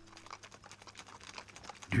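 Hooves of a column of horses clattering on cobblestones: a quiet, fast, irregular patter of many light clicks. A held music note fades out just after the start.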